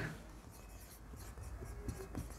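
Marker pen writing on a whiteboard: faint rubbing strokes as a line of text is written.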